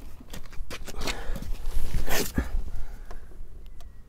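Rustling and scuffing movement noise with a few short breathy bursts, the strongest about a second and two seconds in, as a person crouches beside a loaded bucket on a scale.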